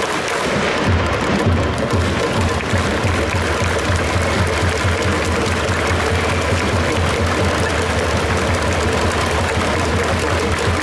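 Baseball stadium cheering music for the batter at the plate, with a steady repeating drumbeat and the crowd clapping along.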